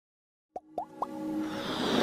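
Dead silence for half a second, then three quick rising plops in a row, followed by a whooshing swell that builds steadily into electronic music: a logo sting.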